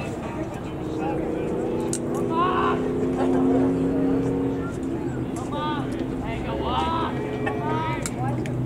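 A steady engine drone, a stack of held tones, that fades out about five seconds in, with voices calling over it.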